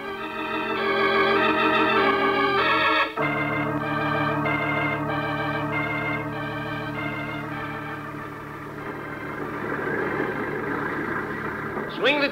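Organ music playing a short bridge between two scenes: held chords swell up, change suddenly about three seconds in, then a moving upper line plays over a steady low chord until the next scene's dialogue.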